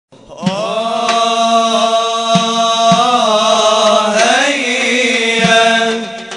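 Male voices chanting an Islamic nasheed in long held notes over a steady low sustained note, the melody bending and rising about three and four seconds in. A few light knocks sound underneath.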